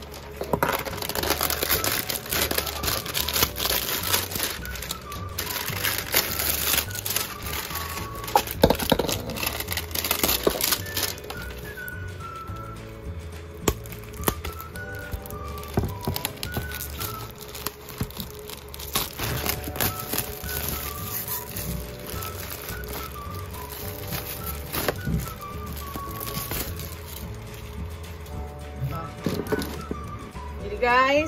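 Clear plastic shrink wrap crinkling and tearing as it is peeled off a whiteboard, densest in the first ten seconds or so and then in sparser crackles. Background music with a melody plays throughout.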